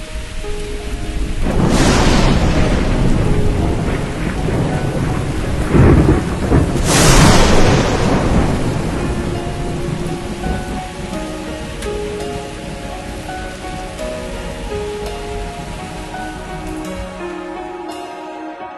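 Thunderstorm: steady heavy rain with two rolls of thunder, the first about a second and a half in and a louder one about seven seconds in, each rumbling away over several seconds. Soft music notes come in under the rain in the second half.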